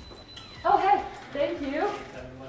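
A dog vocalizing twice, in two drawn-out calls of about half a second each with wavering, gliding pitch.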